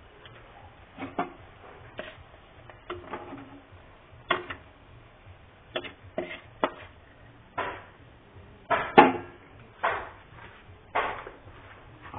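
A spatula scraping and knocking against a wok while stirring dried red chillies and spices frying in oil: about fifteen short, irregular strokes, the loudest about nine seconds in.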